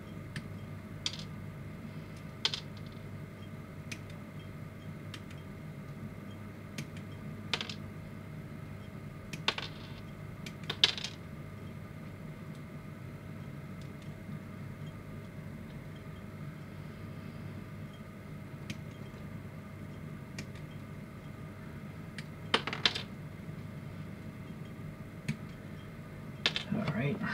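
Scattered sharp plastic clicks as small pre-painted plastic kit parts are snipped off the runner with side cutters and handled. The clicks are a few seconds apart, the loudest about eleven seconds in and a close pair near the end, over a steady low hum.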